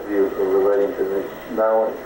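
A man speaking on an old tape recording, the sound thin, with little above the middle range.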